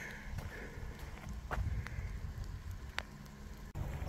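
Low wind rumble on a handheld phone's microphone, with a few sharp clicks from handling. The sound drops out briefly near the end.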